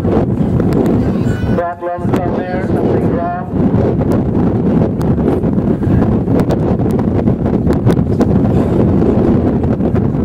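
Wind buffeting the microphone, a loud steady low rumble, with a short burst of a distant voice about two seconds in.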